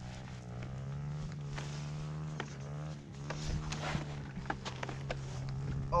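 Dirt-bike engine idling steadily, with scattered light clicks and knocks over it, mostly in the second half.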